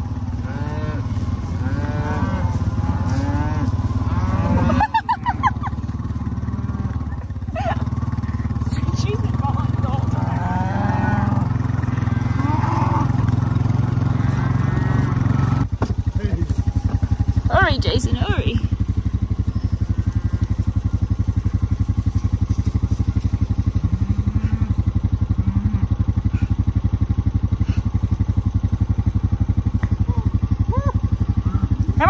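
A herd of beef cattle mooing and bawling over the steady hum of a small farm vehicle's engine. Several moos overlap in the first half, and one higher, rising call comes a little past the middle; the engine hum steadies about halfway through.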